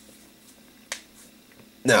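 Quiet room tone with a single sharp click about a second in, then a man starts speaking near the end.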